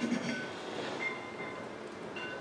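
Faint steady room noise, with a few faint high-pitched tones that come and go.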